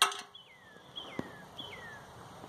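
A bird singing a repeated slurred whistle, each note sliding downward in pitch, three times about two-thirds of a second apart. A sharp click comes at the very start.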